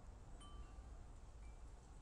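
Near silence, with a few faint, brief high ringing tones about half a second in and again about a second and a half in.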